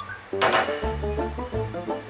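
Background music: a bouncy tune over a moving bass line, with one splashy hit about half a second in.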